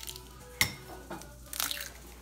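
Eggs being cracked by hand into a ceramic bowl: one sharp click of shell against the bowl about half a second in, then a short crackling rustle of eggshell being broken apart near the end.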